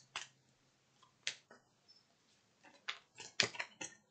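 A deck of tarot cards being shuffled by hand: a few short, crisp card snaps spread out, then a quicker flurry of them in the last second or so.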